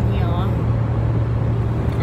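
Steady drone of a car moving at highway speed, heard from inside the cabin: a constant low hum with tyre and road noise.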